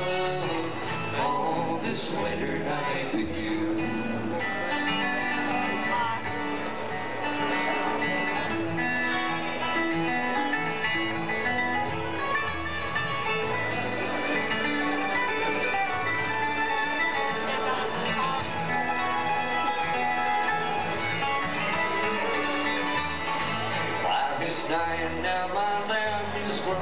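Live acoustic bluegrass band playing without vocals: flat-picked steel-string acoustic guitars, mandolin, fiddle and upright bass walking a steady bass line.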